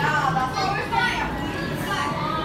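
Indistinct chatter of many people talking at once in a busy café, voices overlapping with no single clear speaker.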